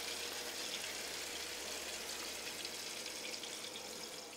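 Water pouring in a vortex from one large water-cooler bottle into another through their taped-together necks: a steady rush of falling water.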